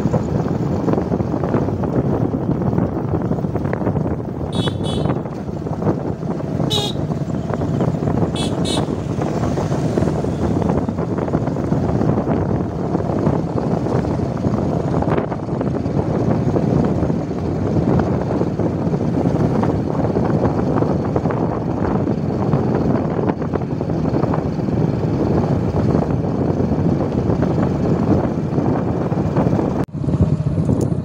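Motorbike riding along a road: steady engine and wind rush on the microphone, with a few short horn toots between about four and nine seconds in.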